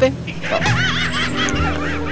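A quick run of high-pitched laughter, several short giggles in a row, over background music.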